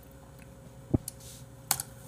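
A few scattered clicks of a computer keyboard: one sharp click about a second in and two more near the end.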